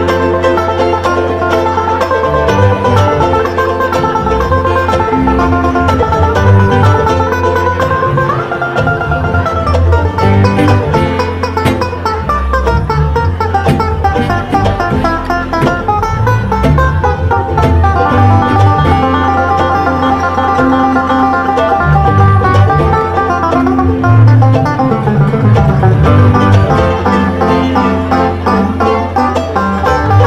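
Bluegrass string band playing an instrumental passage: fast banjo picking over guitar and a steady low bass line.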